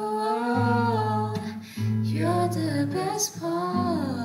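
A woman singing a slow song with long held notes, accompanied by a classical guitar.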